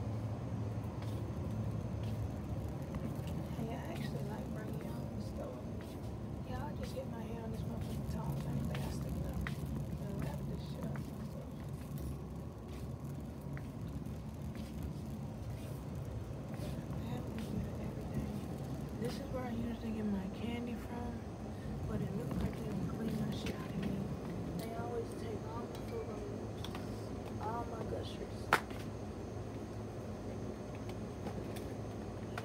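Wire shopping cart rolling across a concrete store floor: a steady low rumble from its wheels, with faint background voices and one sharp click near the end.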